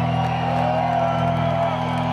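Live band holding a steady low sustained chord, with audience voices and whoops over it.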